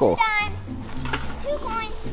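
A beagle puppy whining: a high, wavering cry just after the start and a shorter one near the end, over background music.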